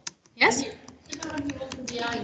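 Computer keyboard being typed on: an uneven run of key clicks.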